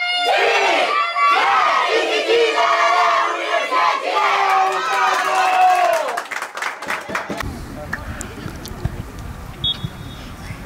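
A team of young women footballers shouting and chanting together, many voices at once, then a burst of clapping about six seconds in. After that only a quieter low outdoor rumble remains.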